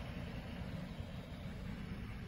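Police SUV idling close by, a low steady rumble.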